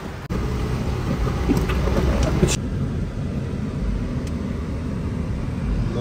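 Car engine and road noise heard from inside the cabin, a steady low rumble. There is a short knock just after the start, and the brighter outside hiss drops away suddenly about two and a half seconds in.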